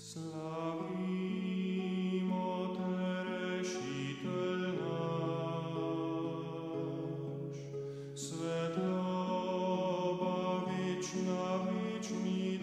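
Choir singing a slow Slovenian hymn in long, held phrases, a new phrase starting every three to four seconds.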